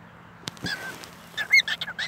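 Cockatiel giving several short, high chirps, most of them bunched together about a second and a half in. A single sharp click comes just before them.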